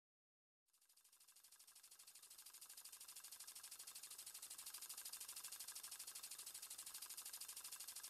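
Faint, rapid and evenly spaced clicking, mostly high-pitched, that fades in about a second in and slowly grows louder before levelling off.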